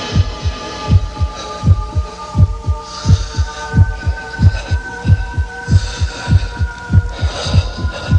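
A recorded heartbeat sound effect played loud through a hall's sound system: deep double thumps repeating about every 0.7 seconds, over a steady electronic drone, as the intro to a dance number.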